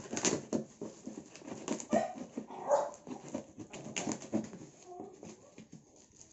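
Polythene-and-tape parcel wrapping crinkling and tearing as it is cut open with scissors, in many quick, irregular rustles and snips. A couple of short whine-like tones come through, one about two and a half seconds in and another near five seconds.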